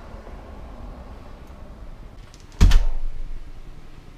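A door shut with one loud thump about two-thirds of the way in, a few faint clicks just before it and a short ringing tail after. Before it, a low steady rumble.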